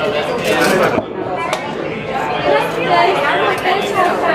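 Voices and background chatter of people talking in a busy bar room, with one sharp click about a second and a half in.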